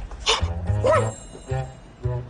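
Two short barks about half a second apart, over background music with a steady low beat.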